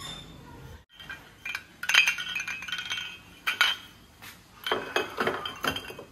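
Glass light bulbs clinking and knocking against each other, in a run of irregular sharp clinks and clicks, the loudest about two seconds in.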